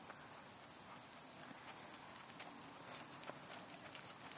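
Faint hoofbeats of a horse moving over a sand arena, soft scattered thuds.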